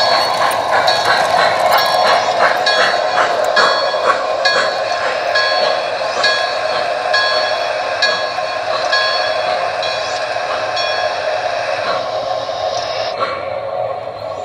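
MTH O gauge Milwaukee Road Hudson model steam locomotive and its passenger cars running on the track, with a steady rolling sound. Over it a ringing note strikes about twice a second, and it stops a couple of seconds before the end.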